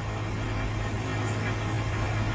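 A steady low hum with a faint hiss over it.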